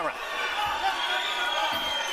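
Boxing arena crowd noise: a steady din of many voices around the ring.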